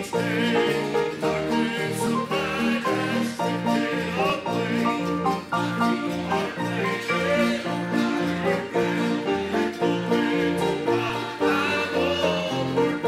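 Live acoustic string music in a bluegrass-country style: guitar and other plucked strings playing an instrumental with a steady, evenly paced bass rhythm and some wavering melody notes.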